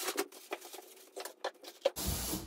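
Shiba Inu's claws and paws tapping lightly on a hard floor as the dog walks, a quiet, irregular scatter of small clicks.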